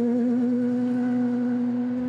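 Ford Fiesta R2 rally car's engine held at high revs in one steady, slightly wavering note as the car drives away.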